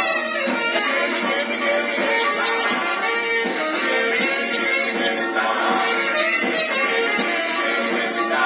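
A fast doo-wop 45 rpm record playing on a Magnavox record player, its sound a little scratchy and thin, with almost no bass.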